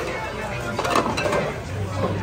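Restaurant background chatter with a few short clinks of plates and cutlery, one at the start and a cluster about a second in.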